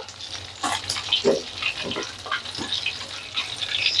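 Egg-battered milkfish (bandeng) sizzling and crackling in hot oil in a wok, with a few knocks and scrapes of a long metal spoon as the pieces are lifted out to drain.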